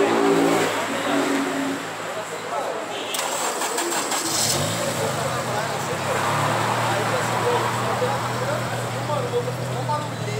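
Mercedes-AMG A35's 2.0-litre turbocharged four-cylinder engine starting about four seconds in, its pitch sweeping up in a brief start-up flare before it settles into a steady idle. An engine hum dies away in the first two seconds.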